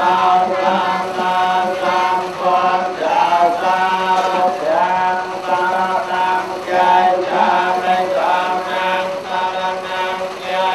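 Buddhist monks chanting into a microphone: a continuous, droning chant with long held notes that slide slowly in pitch.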